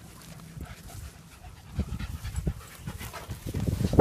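A dog panting close to the microphone, the breaths growing louder near the end.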